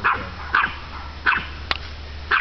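A dog barking in three short, high-pitched yips, with a sharp click near the end.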